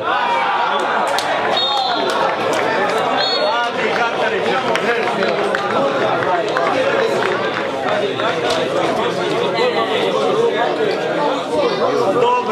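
Spectators at a football match shouting and cheering, many voices at once, rising suddenly as a goal goes in.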